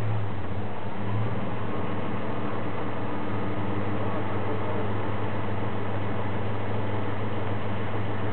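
A four-wheel-drive engine running steadily at low revs, a constant low hum with no revving.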